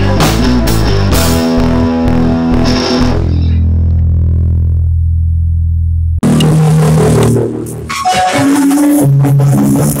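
Sludge metal band playing guitars, bass and drums. About three seconds in, the drums and guitars drop away, leaving one held low note. Just after six seconds the full band comes back in.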